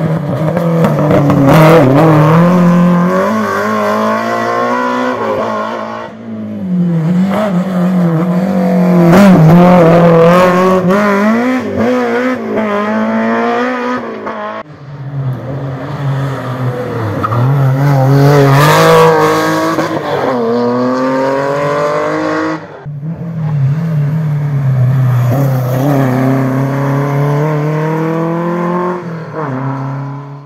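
Rally cars passing one at a time, about four in turn. Each is heard with its engine revs rising and falling through gear changes as it brakes and accelerates hard away. Among them are a BMW E30 and an air-cooled classic Porsche 911.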